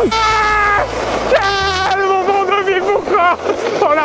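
A man's long, excited shouting: one held yell at a steady pitch, then a string of drawn-out, wavering cries.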